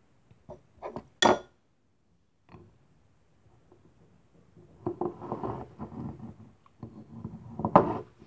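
A few light clicks and one short ringing glass clink about a second in, then a few seconds of scraping and rattling as the lid of a glass honey jar is twisted open, ending with a sharper knock.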